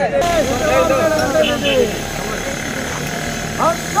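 Several people talking for the first couple of seconds, over a vehicle engine running steadily that comes through more plainly once the voices drop.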